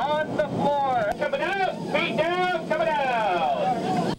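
A man's announcement over an airliner's cabin public-address system, over the steady noise of the aircraft cabin.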